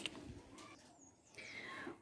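Quiet: a faint rustle of a sheet of paper being handled and laid flat on a table, then a faint high tone gliding downward near the end.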